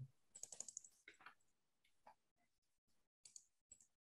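Faint clicking of computer keyboard keys: a quick run of about half a dozen clicks near the start, then a few scattered single clicks.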